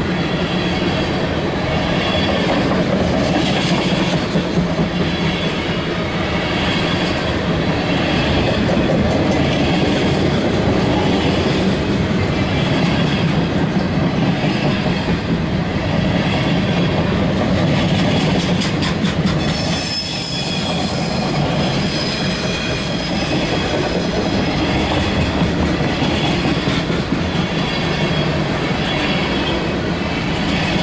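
CSX mixed freight train's cars rolling past close by: a steady, loud rumble of wheels on rail with a regular clickety-clack repeating about once a second. In the second half, thin high wheel squeal rides over the rumble.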